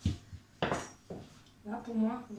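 Kitchen handling noises as pastry is lifted on a wooden rolling pin over a metal tart tin: a sharp knock, then two short scraping clatters about half a second apart. A woman starts speaking near the end.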